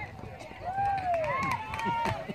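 Several voices shouting long, drawn-out calls across the ball field, overlapping about half a second in and running on to the end.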